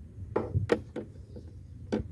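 Several sharp plastic clicks and taps from handling the cabin air filter housing's clip-on cover, the last one, near the end, among the loudest.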